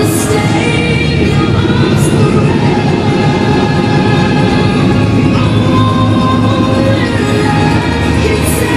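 Live rock band playing at full volume through a festival tent PA: bass, guitars and drums, with a cymbal crash right at the start and another about two seconds in.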